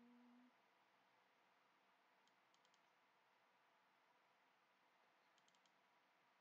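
Near silence, broken twice by faint quick computer mouse clicks, the double-clicks that open folders in a file dialog.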